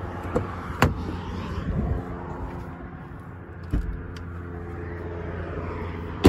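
Power liftgate of a 2022 Lincoln Nautilus opening by itself: a sharp click less than a second in, then a steady electric motor hum as the gate rises, with a knock at almost 4 s.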